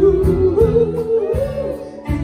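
Live soul band with a vocal group: a singer holds a long high note over bass, drums and cymbals, the music easing off briefly near the end.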